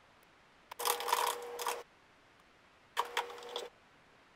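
Two quick bursts of typing on a computer keyboard: a run of rapid key clicks lasting about a second, starting just under a second in, then a shorter run near the end.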